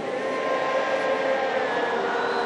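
Steady noise of a large crowd in the stands, with a single note held over it.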